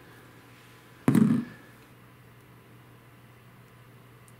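A single short thump about a second in, over a faint steady low hum.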